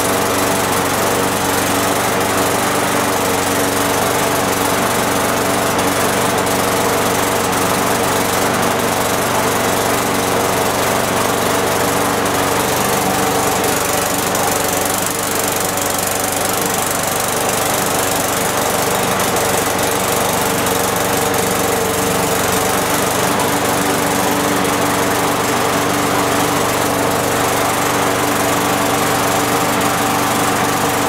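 Weed Eater push mower's small four-stroke engine running at a steady speed, warming up with fresh gas in the tank, with a slight dip in loudness about halfway.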